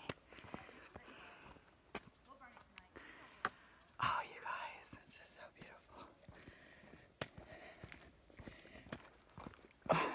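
Soft, breathy whispered sounds close to the phone microphone from the person walking and filming, with scattered light footsteps and handling clicks. A louder breathy patch comes about four seconds in.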